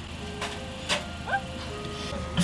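Faint eerie background music: a few thin held tones with a short rising note in the middle, over a low steady hum, with a couple of soft clicks.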